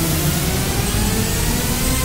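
Loud electronic intro music: a dense, noisy build with several tones gliding upward.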